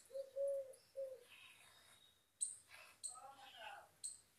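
Faint background birds: a low two-note cooing call in the first second or so, a long note then a short one, and a brief high chirp a little over two seconds in.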